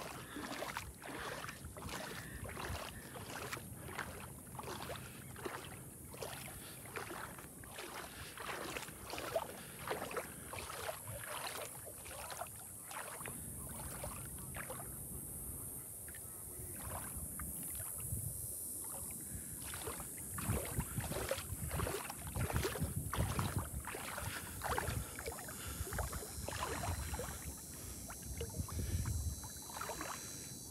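A person wading through shallow lagoon water: rhythmic swishing and sloshing of the legs, about two strides a second, with a low rumble in the second half.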